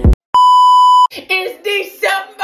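An electronic beep, one steady tone lasting under a second, comes right after the music cuts off. A woman's voice follows, drawn out and sing-song.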